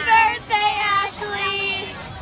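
Children singing in high voices, with wavering pitch and a few briefly held notes.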